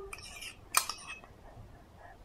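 A metal spoon scraping and clicking against a plastic baby-food bowl as food is scooped up, with one sharp click a little under a second in.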